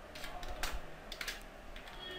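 Computer keyboard typing: about five quick keystrokes in two short runs in the first half.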